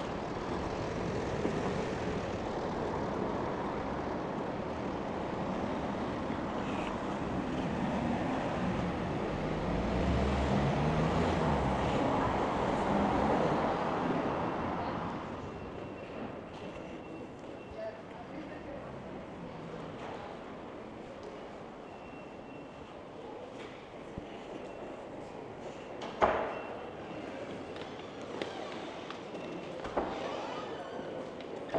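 Street traffic ambience with a vehicle passing, loudest about ten to fourteen seconds in. About fifteen seconds in it gives way to the quieter ambience of a railway station concourse, with faint short beeps and a single sharp knock near the end.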